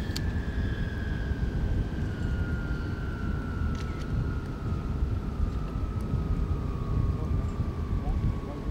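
Sikorsky VH-3 Sea King (Marine One) helicopter's turbine engines winding down after landing: a whine that falls slowly and steadily in pitch over a heavy low rumble.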